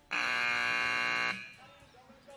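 Arena timing buzzer sounding one steady, loud blast of a little over a second that cuts off sharply.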